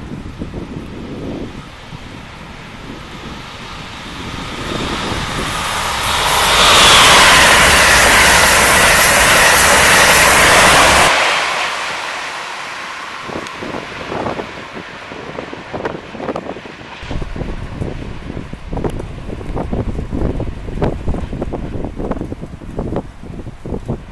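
Amtrak Acela Express high-speed electric trainset passing close by at speed: a rush of wheel and air noise that builds over a few seconds, stays loud for about five seconds, then drops away suddenly as the train clears. Afterwards wind buffets the microphone with irregular thumps.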